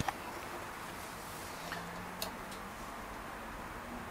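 Steady low background hiss, with a faint brief hum about halfway through and a couple of faint clicks.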